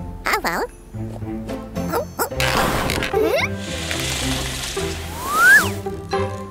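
Cartoon background music with a character's short wordless calls near the start, then a sled sliding down a snowy slope as a long hissing rush. Near the end comes a rising whistle-like glide that peaks and breaks off.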